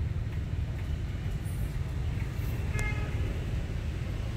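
Steady low rumble of street background noise, with one short vehicle horn toot nearly three seconds in.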